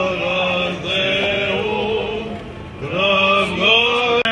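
Male voices singing Greek Orthodox Byzantine chant: a slow melody of long held, gliding notes over a steady low held drone (the ison). The singing eases briefly about two and a half seconds in, then comes back fuller.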